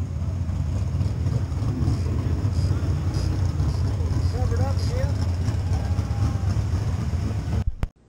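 In-car camera audio from a sprint car: a loud, steady low rumble of the engine with wind on the microphone. A faint voice is heard about halfway through, and the sound cuts off abruptly just before the end.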